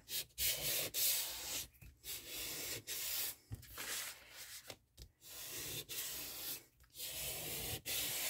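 Handheld sanding file rubbing across a manila file folder, scuffing its taped score lines. It goes in uneven passes of rough scraping with several short pauses.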